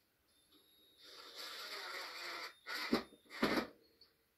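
Cordless drill driving a short screw through a washer and wire hook eyelet into plywood: a steady run of about a second and a half, then two short, louder bursts as the screw is seated.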